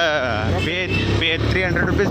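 A voice singing with a wavering, vibrato-like pitch, over a steady low hum from the motorbike being ridden.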